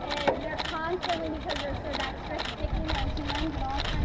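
A person speaking, with a quick, regular clicking of about four clicks a second running underneath.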